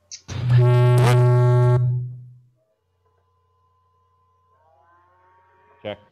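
Loud, steady electronic buzz with a pitched tone, starting shortly in, lasting about two seconds and then fading out. It comes through the audio feed just before a mic check.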